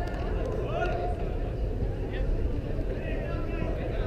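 Faint voices of players calling in the distance, over a steady low rumble.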